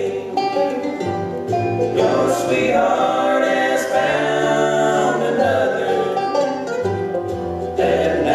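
Bluegrass band playing live: close vocal harmony singing over banjo, mandolin, acoustic guitar and upright bass.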